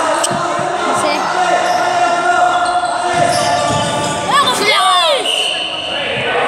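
Basketball game in a sports hall: the ball bouncing on the court amid players' and onlookers' voices, with a quick run of shoe squeaks on the floor about four and a half seconds in.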